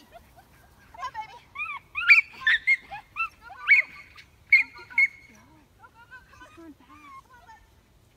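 A small dog barking excitedly in sharp, high yips, loudest in a quick run of about six between two and five seconds in, with fainter calls before and after, while it runs and jumps an agility course.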